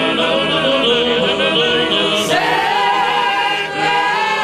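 Large male choir singing trallalero, the unaccompanied Genoese polyphonic folk song, many voices in close harmony. One singer sings the 'chitarra' part, imitating a guitar with his hand held at his mouth. The voices move to a new chord a little over halfway and hold it under a high sustained note.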